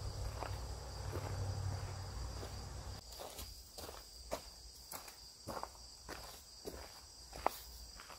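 Scattered footsteps on gravel and short clicks and knocks of armour gear being handled as a steel helm with mail, gauntlets and shield are put on, over a steady high chirring of insects. A low rumble stops about three seconds in.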